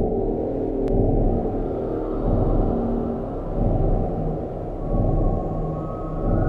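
Dark ambient drone music: a dense, low rumbling drone with steady held tones that swells and fades in slow waves. Fainter higher tones come in near the end.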